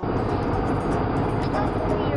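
Steady road and engine noise of a moving car, heard from inside the cabin, with faint music playing under it.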